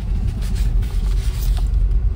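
Steady low rumble of a car driving slowly, heard from inside the cabin, with a few faint brief rustles.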